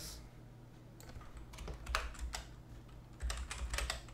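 Computer keyboard typing in two short bursts of keystrokes, one around two seconds in and a quicker run near the end.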